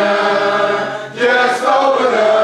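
Congregation singing a hymn a cappella, voices holding long notes together, with a brief dip between phrases about a second in.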